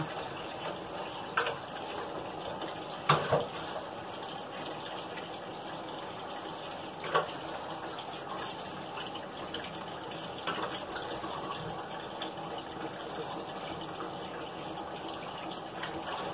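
Kitchen tap running steadily into a sink during hand dishwashing. Dishes clink sharply now and then, four or five times.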